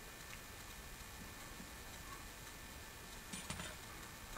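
Faint small ticks of a sharp knife working through a pumpkin's rind on a wooden cutting board, with a couple of light knocks about three and a half seconds in as the pumpkin is lifted in the hands.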